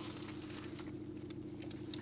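Quiet eating of black sausage held in paper napkins: faint scattered clicks of chewing and paper handling over a steady low hum.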